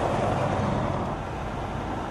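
A car driving along: steady road and engine noise with a low rumble, easing off slightly in the second half.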